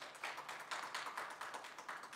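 Light, scattered applause: many quick irregular claps after a public comment.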